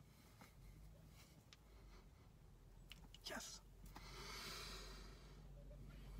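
Near silence: quiet room tone with a few faint clicks, and a soft breath out about four seconds in.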